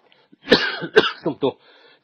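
A person coughing twice, about half a second apart, each cough starting suddenly.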